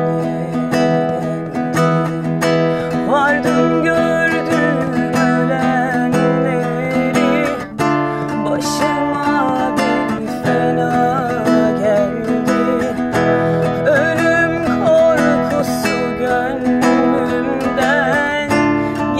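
A woman singing a pop song to her own strummed acoustic guitar inside a car, the voice wavering over steady chords.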